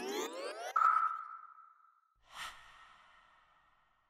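Logo sting sound effect: a rising synthetic sweep settles into a held tone and fades, then a soft whoosh about two and a half seconds in rings out and dies away.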